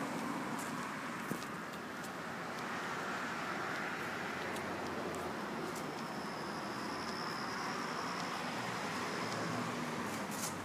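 Steady background noise of road traffic on a city street, with no single event standing out.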